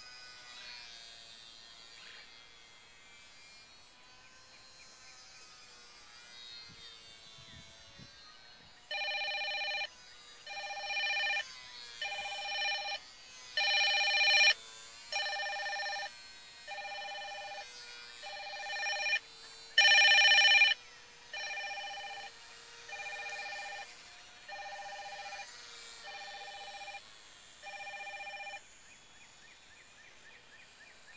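A mobile phone ringing: an electronic ringtone pulsing about fourteen times, roughly one ring every second and a half, starting about nine seconds in and stopping near the end, with some rings louder than others.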